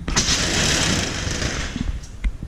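Slatted metal roll-up compartment door on a fire truck being pulled up and rolled open, rattling for about a second and a half before it stops.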